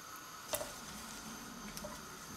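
Faint sizzle of chopped ginger and spring onion sweating in coconut oil in a frying pan, with a single wooden knock about half a second in and a few light ticks near the end as the wooden board and spoon meet the pan.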